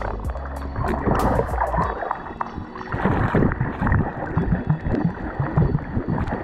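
Muffled sloshing and rushing of water picked up by a camera held underwater, with irregular low surges as the swimmer moves, under background music.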